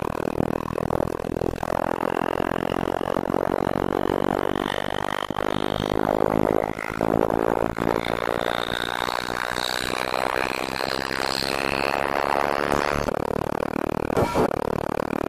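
Experimental electronic soundtrack: a dense, churning noise texture with faint high tones slowly rising.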